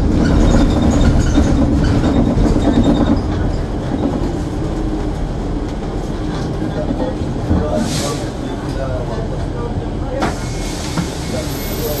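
Running noise inside a moving public transit vehicle: a steady low rumble, louder for the first three seconds, with a brief hiss about eight seconds in and a sharp click just after ten seconds.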